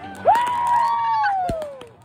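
Backyard consumer fireworks going off: a long high tone jumps up and then slides slowly down in pitch, over small crackles, and a sharp bang comes about a second and a half in.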